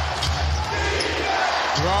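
A basketball being dribbled on a hardwood court, a run of low, repeated bounces, over steady arena crowd noise.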